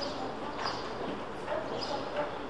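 Pedestrian-street ambience: passers-by's voices and a few short, sharp sounds about half a second apart over a steady background hum of the street.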